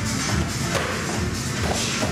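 Electronic dance music with a steady beat.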